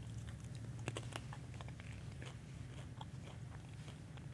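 A man quietly chewing a communion wafer, with faint crunching clicks scattered throughout, over a low steady hum.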